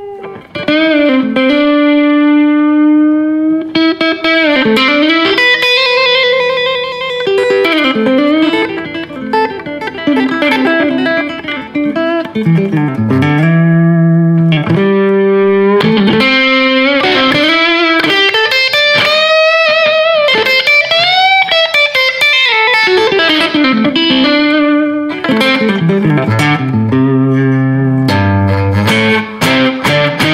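Jasper Guitars Deja Vudoo electric guitar on its neck humbucker, played through an amp: a melodic lead line of single notes and chords, many notes bending and wavering in pitch and ringing out with long sustain. The volume knob is turned during phrases, and the loudness dips briefly a few times.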